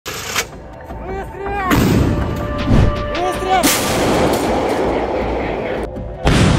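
Artillery gun firing: two sudden blasts, about two seconds apart, each trailing off in a long rumble. Short shouted calls come just before each blast.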